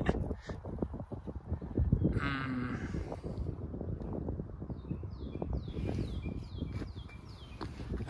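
Birds singing, a run of short high down-slurred notes in the second half, over low rustling. About two seconds in comes a louder, brief low nasal call.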